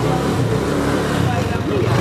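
A motorcycle engine running close by on a street, with people talking.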